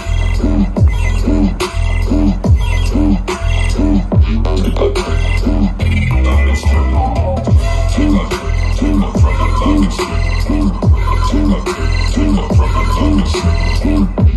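Loud electronic bass music through a festival sound system, heard from within the crowd: heavy sub-bass with pitch-dropping bass hits a little more than once a second. A little past the middle the hits break off for about two seconds, then return.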